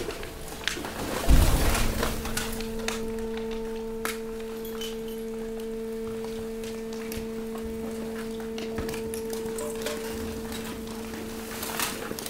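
Hydraulic waste compactor under load: a heavy thump just over a second in, then the press's pump holds a steady hum while bagged mixed waste crackles and pops as it is pushed into the container.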